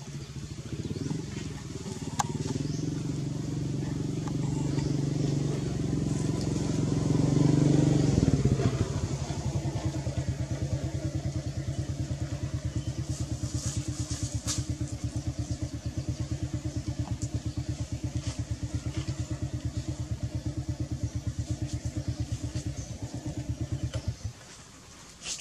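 A small engine running close by, growing louder over the first several seconds, then about nine seconds in settling into an even, rapid pulsing that cuts off abruptly at the end.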